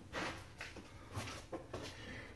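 Quiet handling noise: a few soft rustles and brushes as a phone is moved about by hand.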